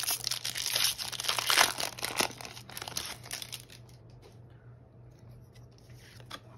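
Foil Pokémon TCG booster pack wrapper being torn open and crinkled by hand, a dense crackle for about the first three seconds, then only faint rustles as the cards are drawn out.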